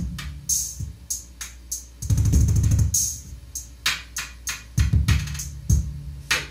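Instrumental rock music: kick drum and cymbal hits over a low, sustained bass line, with a denser drum-and-bass passage about two seconds in.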